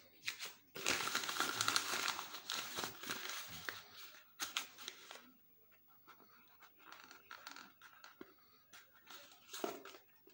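A sheet of paper being crumpled and rubbed in the hand: loud crinkling for about three seconds, then softer, intermittent rustling, with a last short crinkle near the end.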